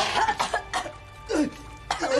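A woman coughing in short sudden bursts as she comes round after nearly drowning, coughing up water.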